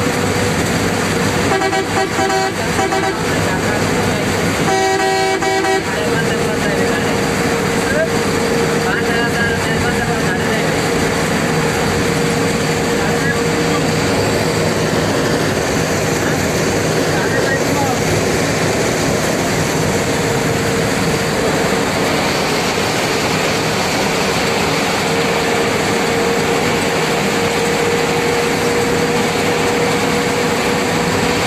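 Steady road and engine noise heard from inside a vehicle cruising on a highway, with a faint steady whine running through it. A vehicle horn sounds twice near the start, each blast about a second long.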